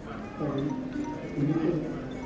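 Voices talking indistinctly over quiet background music, starting about half a second in.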